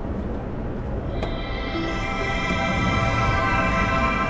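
Ring Video Doorbell sounding its musical start-up chime as it powers on into setup mode after being pushed onto its mount. The sustained, held chord starts about a second in and slowly grows louder.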